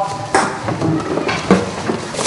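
Empty plastic bottles, cans and cartons clattering and clinking as they are handled and dropped on a floor, with two sharper knocks, one about a third of a second in and one about one and a half seconds in.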